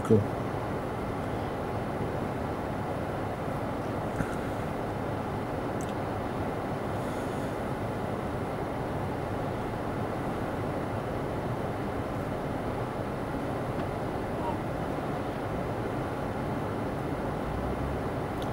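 Steady low hum inside a car's cabin, with the engine idling while the car is stopped in traffic.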